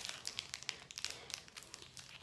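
Faint crinkling of a foil Pokémon card booster pack (Astral Radiance) being handled in the fingers: a scatter of small crackles.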